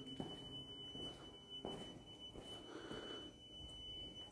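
Building fire alarm sounding a faint, steady, high-pitched continuous tone.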